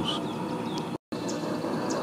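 Steady outdoor background noise with a few short, high chirps, broken about a second in by a moment of dead silence where the recording is cut.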